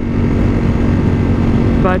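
Ducati Streetfighter V4's V4 engine running at a steady cruise with no change in revs, under loud wind rush on the microphone.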